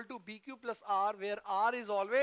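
Speech only: a man talking continuously into a headset microphone, reading a maths condition aloud in mixed Hindi and English.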